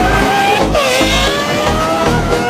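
A sports car engine accelerating, its pitch climbing, dropping sharply at a gear change less than a second in, then climbing again. Music with a pulsing bass plays over it.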